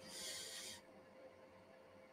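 A short, faint breath on the microphone lasting under a second, then near silence with a faint steady hum.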